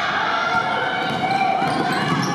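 A basketball dribbled on a hardwood gym floor, over indistinct voices of players and spectators echoing in the gym.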